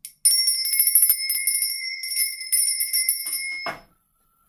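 Small brass lady bell (a hand bell shaped as a lady figure) shaken rapidly, its clapper striking over and over to give a loud, high, sustained ringing that stops suddenly after about three and a half seconds.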